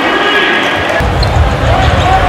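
Basketball game sound in an arena: music over the arena speakers, with held tones in the first second and a heavy low beat from about a second in, while a basketball is dribbled on the hardwood court.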